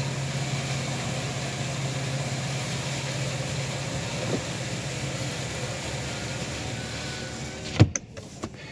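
Vehicle engine idling with the ventilation fan blowing, heard from inside the cabin: a steady low hum under an even hiss. Near the end there is a sharp click, and the hiss stops suddenly while the low hum goes on.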